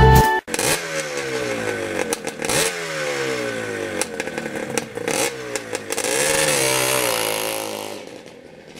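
Motorcycle engine being revved in repeated blips, each time the revs sinking slowly back toward idle, with an uneven, wavering run of revs near the end.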